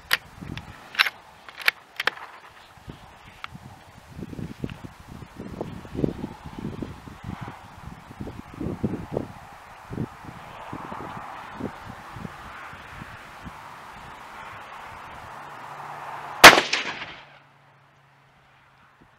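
A single shot from a Savage Model 10 FCP-K bolt-action rifle in .308 Winchester, fired from a bench with a 165-grain handload, about sixteen seconds in. It is a sharp, very loud crack with a short ring after it.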